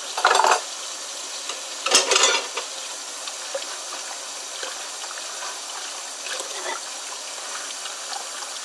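Tap water running steadily into a stainless-steel kitchen sink during hand dishwashing, with two short clatters of dishes, one right at the start and one about two seconds in.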